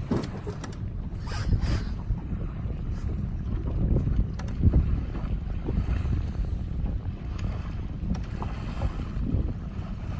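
Wind buffeting the microphone in uneven gusts, a low rumble, over the wash of water around a small boat.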